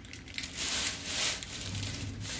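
Clear plastic wrapping on a roll of gold ribbon crinkling as it is handled, a rustle lasting about a second.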